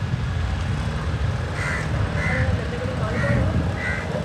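A steady low rumble as a small boat travels along the canal. In the second half, crows caw four times in short, harsh calls.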